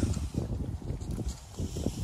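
Wind rumbling on the microphone, with a few soft knocks and rustles.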